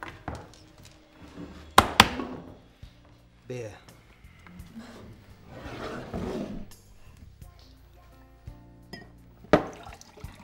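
Sharp knocks on a wooden bar counter: two in quick succession about two seconds in and another near the end, over quiet background music.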